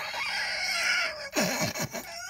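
A woman laughing, breathy at first, then a few short pitched laughing sounds near the end.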